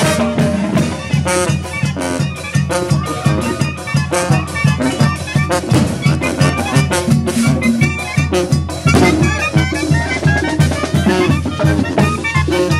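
Mexican carnival brass band (banda) playing a fast dance tune: sousaphone, drums and congas keep a steady beat under trumpets, trombones and clarinets.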